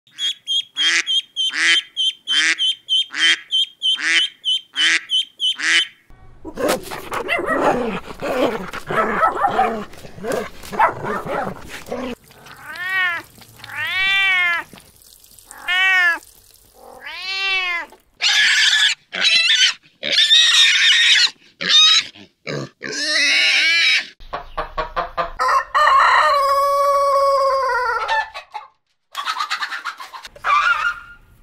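A run of farm-animal calls cut one after another. First ducklings peeping rapidly, about two peeps a second. Then a rougher, noisier stretch of calls, a cat meowing several times, and near the end one long call that falls in pitch.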